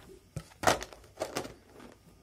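A few sharp clacks of Cuisenaire rods knocking against each other and the clear plastic tub as they are picked out by hand, the loudest a little under a second in.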